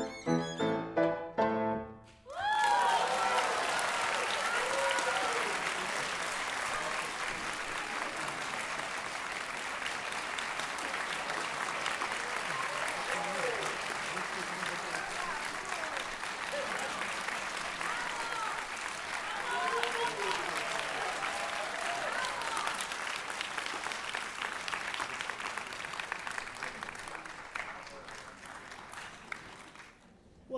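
A violin and piano piece ends on its closing notes, then an audience breaks into applause about two seconds in and keeps clapping almost to the end, with scattered shouts and cheers, fading away in the last couple of seconds.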